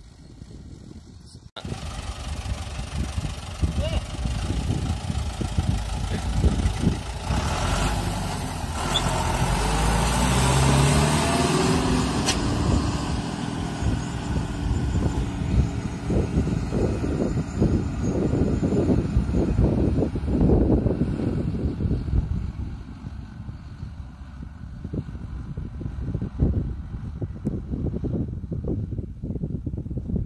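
John Deere tractor's diesel engine running as it pulls a loaded Marchesan Tatu lime spreader past and away across the field, loudest near the middle as it goes by, with its pitch bending, then fading near the end as it pulls away.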